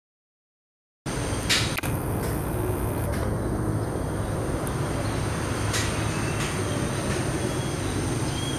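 Outdoor ambience starting abruptly about a second in: a steady low rumble with a thin, steady high tone over it, and a handful of short, sharp high chirps scattered through.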